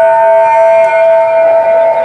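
Steady held tones from the stage sound system: two or three notes stacked into a chord that come in one after another and hold without wavering, fading near the end.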